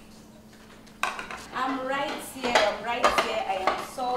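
Metal spoon clinking and scraping against a ceramic plate and a steel cooking pot, starting about a second in, with several sharp clinks among the scraping.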